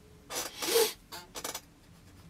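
Bristle brush scrubbing oil paint onto canvas: four short rasping strokes in quick succession, the second the loudest.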